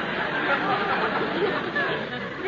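Studio audience laughing at a joke, the laughter gradually dying away.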